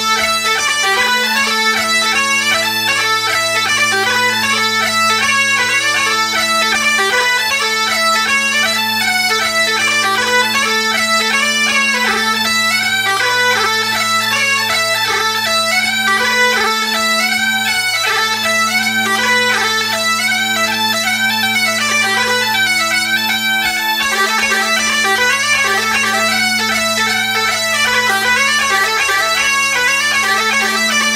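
Highland bagpipe playing a tune: a quick-moving chanter melody over steady, unbroken drones.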